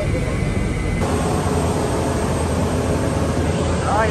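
Loud, steady airport apron noise from aircraft and ground equipment running, with a heavy low rumble. About a second in, it changes abruptly from the muffled sound inside an apron shuttle bus to the open tarmac.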